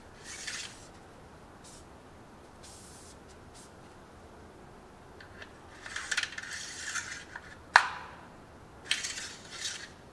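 Paper towel rustling and a metal oil dipstick scraping in and out of its tube in several short bursts, with one sharp click about three-quarters of the way through, the loudest sound.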